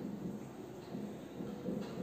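Faint strokes of a marker writing on a whiteboard over low, steady room noise.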